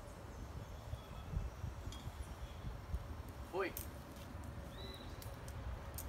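Steady low rumble of outdoor background noise, with a brief voice-like glide about three and a half seconds in and a short high chirp near five seconds.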